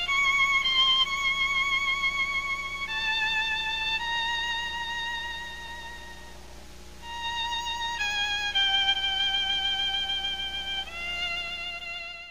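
Solo violin playing a slow melody of long held notes, each wavering slightly, with a quieter stretch in the middle; it fades out at the end.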